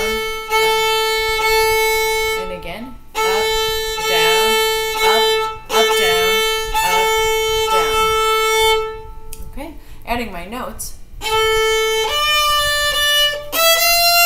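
Violin bowing its open A string in a series of long strokes broken by short stops, practising an up-down bowing pattern. Near the end it steps up to a couple of higher fingered notes.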